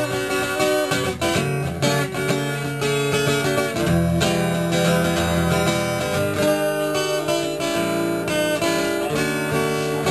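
Acoustic guitar strummed through an instrumental break between sung lines, the chords changing every second or two.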